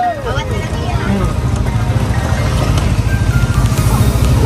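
A steady low rumble of a motorbike engine and wind while riding slowly, with people's voices around it and some music.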